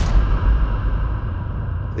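The ending of a trailer-music sketch made from one-shot samples: a heavy impact hit right at the start, followed by a sustained low rumbling, noisy tail that is cut off shortly afterwards.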